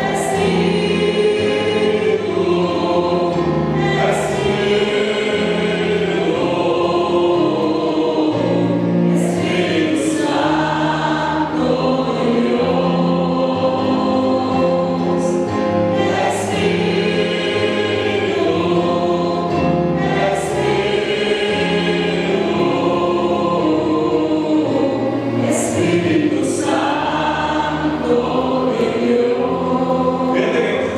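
Congregational worship singing: many voices singing together over an electronic keyboard playing sustained chords that change every couple of seconds.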